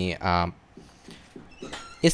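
A man's voice narrating, one long drawn-out syllable in the first half-second, then a short pause with faint low murmurs before speech picks up again.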